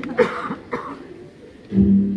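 Two short coughs early on, then a low held note of background music comes in near the end.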